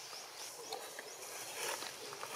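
Outdoor ambience: a steady background hiss with scattered light clicks and a few brief, high chirps.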